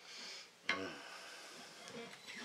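Quiet electric guitar: a chord or note is picked about two-thirds of a second in and rings, fading away.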